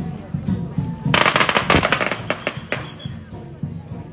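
A string of firecrackers going off about a second in: a rapid crackle of pops for about a second, then a few separate bangs, over music.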